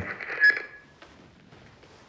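A short bright ringing tone about half a second in, fading away within a second, then quiet room tone.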